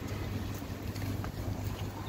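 Steady low rumble of outdoor street noise and wind on a handheld microphone, with a constant low hum underneath and faint light ticks.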